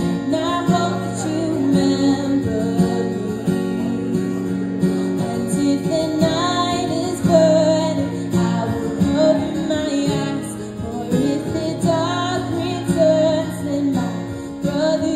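A woman singing to her own acoustic guitar accompaniment, long held sung notes over strummed chords.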